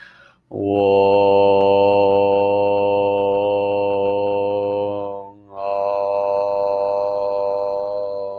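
A man's voice chanting a mantra in long, steady, single-pitch tones. There are two held notes with a short breath between them about five seconds in.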